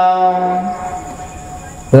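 A man's voice chanting a Buddhist dhamma recitation, holding one long steady note that fades away over the second half, with the next chanted phrase starting sharply right at the end.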